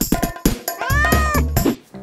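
Intro music with percussive beats, and one drawn-out cat meow about a second in that rises and then falls in pitch. The music cuts out just before the end.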